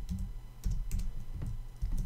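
Typing on a computer keyboard: an uneven run of short keystroke clicks, a few keys a second.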